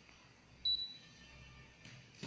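Wirenet DVP-740 mini fiber optic fusion splicer giving a single short, high-pitched electronic beep about half a second in, fading quickly.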